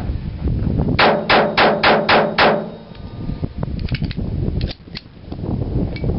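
Jennings J22 .22 LR semi-automatic pistol fired six times in quick succession, about four shots a second. A few fainter sharp cracks follow a couple of seconds later.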